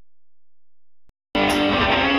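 Near silence, then about a second in a live rock band's music cuts in abruptly, already in full swing, with electric guitars playing loudly.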